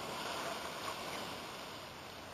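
Water pouring from a plastic bottle onto a small pile of wood-stove ashes on bare ground, dousing them to put them out. It is a little stronger in the first second, then eases off.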